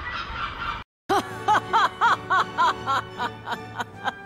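Gull calls, a quick run of short laughing squawks that each rise and fall in pitch, starting just after a sudden cut to silence about a second in.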